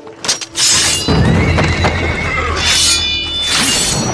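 A horse neighs and whinnies over loud dramatic score music. A sharp hit sounds just after the start.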